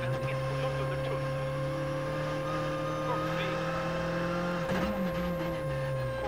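Skoda Fabia R5 rally car's turbocharged 1.6-litre four-cylinder engine heard from inside the cockpit, holding steady revs through a corner. The revs surge briefly about five seconds in.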